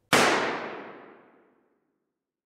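A single gunshot about a tenth of a second in, loud and sudden, with a long echoing tail that fades away over about a second and a half.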